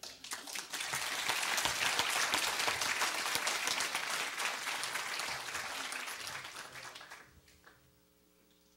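Audience applauding, starting right away and dying away about seven seconds in.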